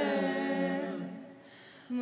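A small mixed group of voices singing Georgian polyphonic folk song a cappella. The phrase dies away about a second in, and a new phrase begins near the end over a steady low held note.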